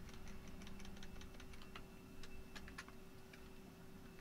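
Faint, irregular light clicks and taps from computer input at a digital drawing setup, over a steady low hum.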